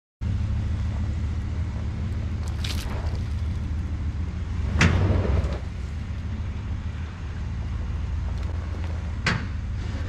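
Ford Raptor pickup engine running steadily under load as it pulls on a chain hooked around a tree stump that will not budge. Three sharp clanks as the chain jerks, the loudest about five seconds in.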